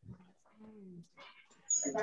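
Faint, indistinct voice sounds over a video-call connection, a low murmur lasting about half a second near the middle.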